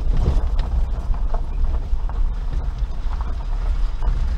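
Suzuki Jimny Sierra JB43 driving slowly over a rough gravel forest track, heard from inside the cabin: a steady low rumble with frequent rattles, clicks and creaks as the body and interior jolt over stones.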